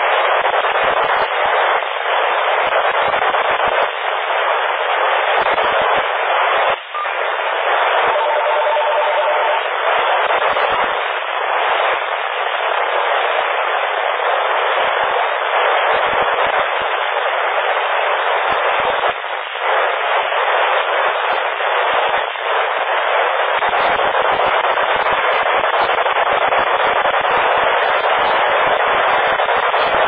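PMR 446 radio receiver putting out steady FM static hiss through its narrow speaker band, with no clear voice in it. A faint pulsing tone of two notes together sounds for about a second and a half, some eight seconds in.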